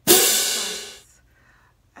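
A single cymbal crash: one sharp hit at the start that rings away over about a second.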